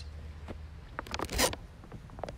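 A few faint clicks, then a short scraping rustle about a second and a half in, over a low steady hum.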